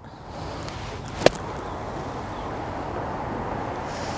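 Golf club stabbing down into bunker sand to pop out a plugged ball: one sharp impact about a second in, over steady outdoor background noise.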